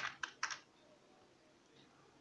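A few quick computer keyboard key presses in the first half second.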